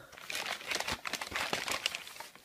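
A brown paper bag crinkling and rustling as it is handled, in a quick irregular run of crackles.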